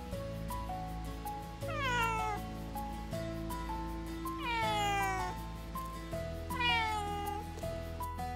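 Domestic cat meowing three times, each meow falling in pitch, over background music.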